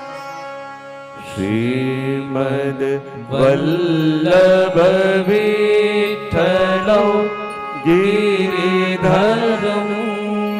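A man singing a devotional chant with a wavering, melodic line over a steady held drone of accompaniment. The voice comes in about a second in and runs in long phrases with brief pauses for breath.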